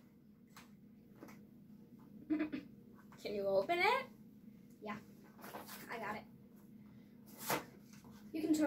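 A candy package being picked and pulled open by hand: quiet rustling, small crinkles and clicks, with a sharper crackle near the end. Faint children's voices murmur now and then.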